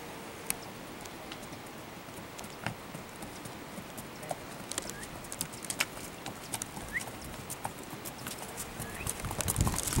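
Horses walking on a dirt trail, their hooves clip-clopping in irregular clicks that come closer and grow louder toward the end. A few short chirps sound now and then.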